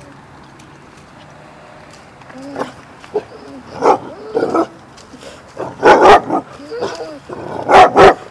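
Basset hounds barking in excitement, a few calls starting a couple of seconds in, the loudest two about six seconds in and near the end.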